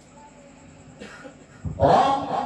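Low room hum, then near the end a sudden loud, rough vocal sound from a Quran reciter right at his handheld microphone as he starts a phrase of tilawah.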